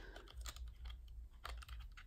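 Faint light clicks and taps of a crystal pen in a clear plastic sleeve being handled on a desk, with one slightly louder tap about one and a half seconds in.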